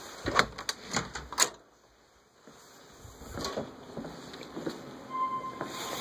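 A door pushed open and shut: a quick run of loud clicks and knocks from its hardware in the first second and a half, then a short hush. Footsteps on a hard floor follow, with a faint steady tone near the end.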